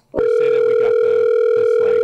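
Telephone ringback tone over a phone line: one steady tone that starts a moment in and holds for about two seconds, the signal that the dialled number is ringing.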